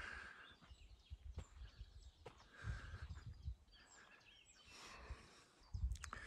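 Faint birdsong: small birds chirping and calling on and off, with a few soft low rumbles underneath.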